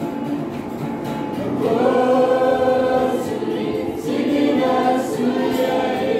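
Youth choir singing a church song in the Kewabi language, several voices together on held notes, growing louder about two seconds in.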